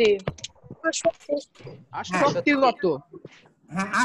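A person's voice speaking in short broken phrases, with a few sharp clicks in the first half-second.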